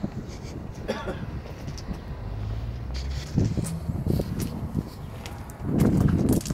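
Wind rumbling on the microphone, with a low vehicle engine hum coming in about two seconds in.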